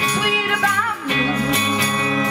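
Live band music in a gap between sung lines: a bass line stepping between notes, steady drums and jingling percussion, with a wavering melody line above.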